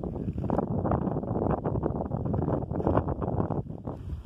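Wind buffeting the microphone: a loud, rough, gusting rumble that eases briefly near the end.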